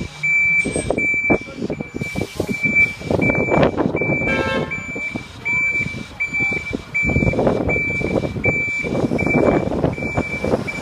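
Reversing alarm of an articulated lorry: one steady high beep repeating a little under twice a second, the sign that the lorry is in reverse. Beneath it runs the lorry's diesel engine rumble and street noise, and a short horn note sounds about halfway through.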